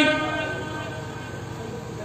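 A man's long held sung note through a microphone and loudspeakers, fading away during the first second and trailing off to a faint tone.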